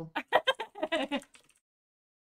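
A person laughing in a few short, choppy bursts for about a second and a half.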